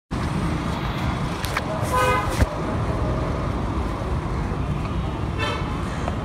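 Busy street traffic noise, with two short vehicle-horn toots, one about two seconds in and one near the end.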